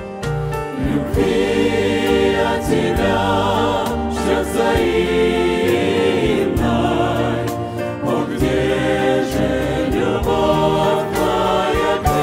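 Church choir singing a hymn together, with instrumental accompaniment carrying sustained low bass notes.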